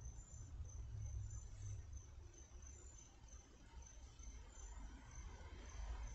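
Faint, high-pitched chirping from a small calling animal: one thin note repeated a few times a second, over a low steady hum.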